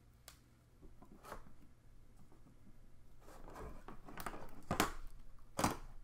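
Clear plastic Rubik's Magic puzzle tiles and their strings being handled on a desk: light scattered clicks and rustling, getting busier in the second half, with a couple of sharper clicks of tiles knocking together near the end.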